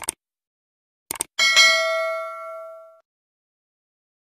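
Sound effects of mouse clicks followed by a bell ding: a click at the start, a few quick clicks about a second in, then a bright bell ding that rings out and fades away over about a second and a half.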